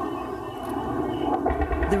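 Steady drone of a warplane's jet engine overhead, with a brief low rumble on the microphone near the end.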